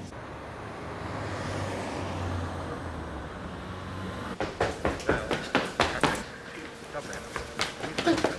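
Steady low roar of jet aircraft engines at an airport, swelling about two seconds in and fading. From about four seconds it gives way to raised voices in quick bursts.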